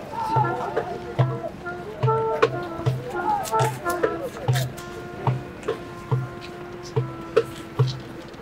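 Live folk music: a flute plays a melody of held notes over a steady low drum beat of about two strokes a second, with sharp percussive clicks and voices in the crowd.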